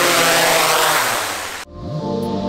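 DJI Mavic 3 drone's propellers whirring close by as it hovers low, a loud steady rushing noise over background music. It cuts off abruptly just before the end, leaving the music alone.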